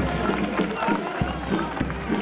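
Greek folk dance music with a steady beat, mixed with crowd chatter and the shuffling steps of many dancers on cobblestones.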